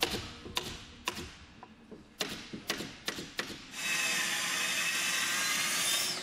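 A series of sharp, irregular knocks and clicks of workshop tool work, then, from about four seconds in, a plunge-cut circular saw on a guide rail running steadily as it cuts through a board.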